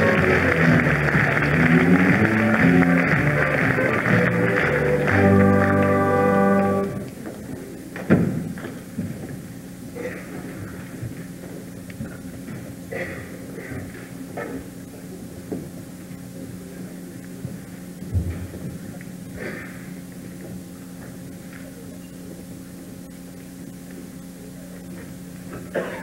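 School-musical pit orchestra playing a scene-change number that stops abruptly about seven seconds in. Afterwards a steady low hum fills the hall, with scattered thumps and knocks, loudest about a second after the music ends.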